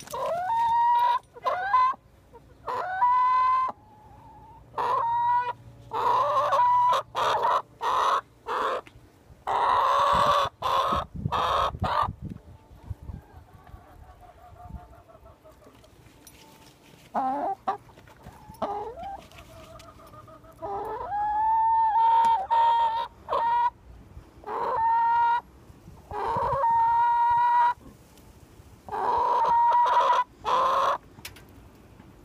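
Backyard hens, a Barred Rock among them, squawking loudly and insistently over and over: short harsh calls, about one a second, each holding a steady note. They go quiet for a few seconds in the middle, then start up again.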